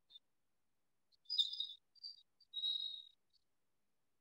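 Faint bird chirping: a few short high chirps about a second and a half in, a brief one at two seconds, and a longer chirp near three seconds.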